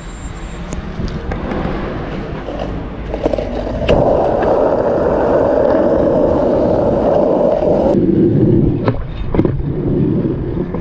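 Skateboard wheels rolling on rough asphalt, the rolling noise building up and running loud for several seconds. Near the end come a few sharp clacks as the board is popped and hits the manual pad.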